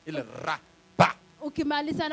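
A man's voice through a handheld microphone and loudspeaker, in short loud utterances, with a sharp pop about a second in.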